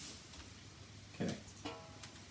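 A few faint plucked string notes, about a second and a half in, over a quiet room hiss.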